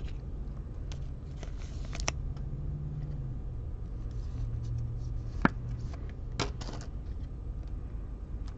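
Light handling noise of trading cards and foil packs on a table: a few soft clicks and brief rustles, with one sharper click about five and a half seconds in, over a steady low room hum.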